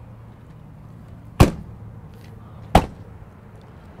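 Two sharp slams about a second and a half apart, the first louder: a motorhome's hinged exterior storage compartment door, the battery bay door, being shut.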